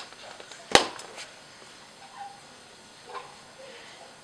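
A single sharp snap a little under a second in, as a Snap Circuits piece is pressed down onto the base grid's metal snap studs, with a couple of lighter clicks close by.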